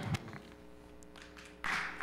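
A faint held chord of background music during a pause in the singing, with a few light taps; voices and noise swell again near the end.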